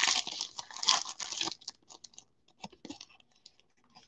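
Foil wrapper of a Panini Donruss football card pack crinkling as it is pulled open, dense for about a second and a half, then a few faint rustles and clicks.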